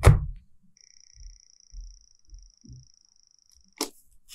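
A plastic gouache pan knocked down into its slot in a plastic palette tray, a sharp click with a low thump, followed by a few soft handling bumps. A faint steady high-pitched tone runs through the middle, and a short sharp click comes near the end.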